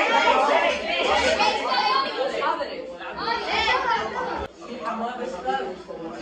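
Several boys talking over one another in a classroom, a chatter of young voices answering at once.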